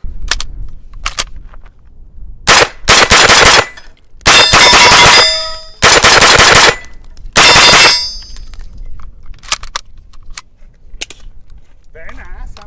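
Century Arms AP5 9mm pistol, an MP5 clone, fired rapidly in several quick strings of shots between about two and eight seconds in, the longest near the middle. Metallic ringing from struck steel targets sounds within the strings.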